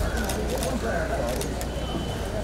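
Indistinct murmur of people's voices outdoors over a steady low hum, with a few faint clicks.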